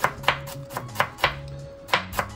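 Chef's knife finely slicing an endive on a bamboo cutting board: quick, regular strokes, about four a second, each ending in a sharp tap of the blade on the wood.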